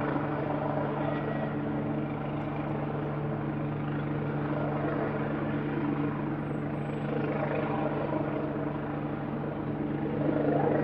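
Helicopter in flight, its rotor and engine giving a steady drone with a fast, even chop of the blades.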